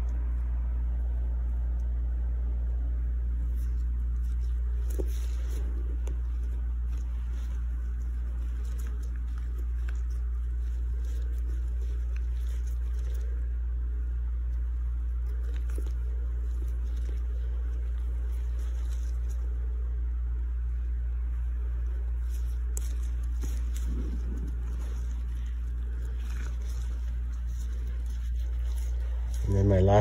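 A steady low hum throughout, with faint rustles and small clicks from gloved hands pulling a needle and string through a skinned lynx pelt to stitch a hole.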